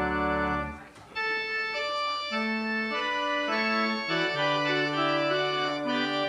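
Organ playing slow, sustained chords; one phrase ends less than a second in, with a brief break before the next phrase starts.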